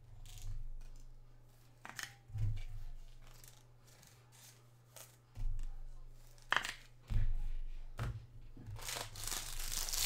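Foil wrapper of a baseball card pack being torn open and crinkled near the end, after several seconds of light rustling, clicks and dull thumps from handling cards and packs.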